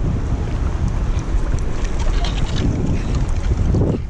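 Wind buffeting the microphone as a loud, steady low rumble, with scattered small clicks and rustles over it.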